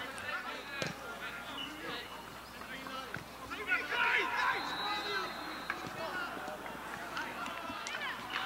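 Voices of football players and spectators calling out across the pitch, with a louder burst of shouting about four seconds in and a couple of short sharp knocks.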